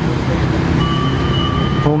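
Road traffic passing close by: vehicle engines running, including a bus or truck, with a thin steady high-pitched tone from about a second in.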